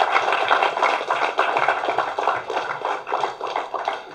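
Audience applauding, a dense patter of clapping that eases off near the end.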